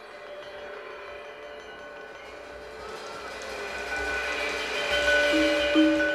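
Javanese gamelan music accompanying a dance, quiet at first and growing steadily louder through the second half, with held notes ringing over it.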